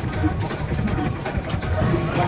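Treadmill motor and belt running steadily under a person's jogging footfalls.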